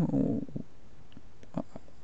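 A pause in the narration: the tail end of a spoken word, then low steady microphone hiss with a few faint clicks about one and a half seconds in.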